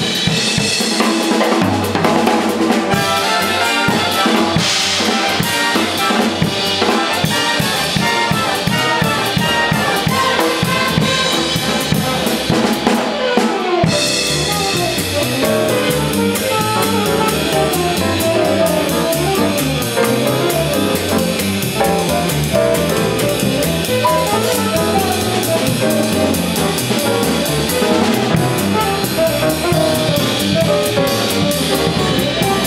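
Big band playing swing jazz live: the brass and saxophone sections over a close drum kit, with sticks on snare and cymbals. About halfway through the music changes, and a stepping bass line comes forward under lighter playing.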